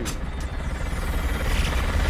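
Film trailer sound effects: a dense rush of noise over a deep rumble, steadily growing louder.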